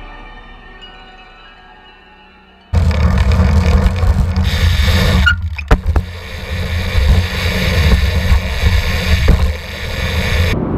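A music chord fades out over the first couple of seconds. Then, suddenly about three seconds in, loud wind buffeting and tyre rumble start from a camera on a BMX peg rolling along asphalt, with a brief lull and a few clicks around the middle.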